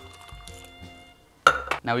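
A quiet pour of liquid from a steel cocktail shaker tin into a glass, then about one and a half seconds in a single sharp knock as the metal tin is set down on the stone countertop.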